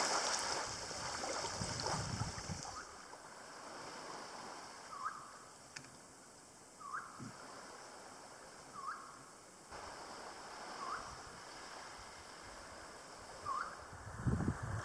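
Small waves lapping on a sandy beach. After a few seconds a bird starts giving a short rising whistled call, five times at about two-second intervals, over a faint steady high hiss.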